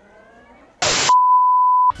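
An electronic beep: one steady, pure, high tone held for almost a second, starting about a second in right after a short burst of hiss, then cutting off suddenly.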